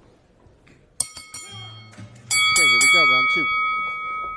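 Boxing ring bell struck three times in quick succession about a second in, then three louder strikes past halfway whose ringing carries on to the end. The bell marks the change from round one to round two.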